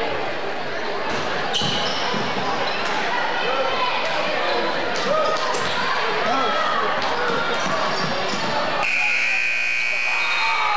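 Gymnasium basketball game sound: crowd voices and shouts, sneakers squeaking and a ball bouncing on the hardwood court as play moves up the floor. About nine seconds in the sound changes abruptly and a steady high-pitched tone comes in.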